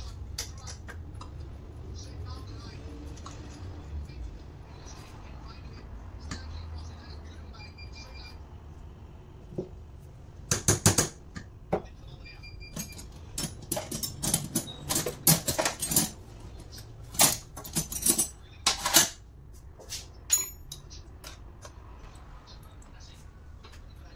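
Small metal parts of a disassembled truck starter motor clinking and clattering under hand work: a quick, uneven run of sharp metallic clicks and knocks through the second half.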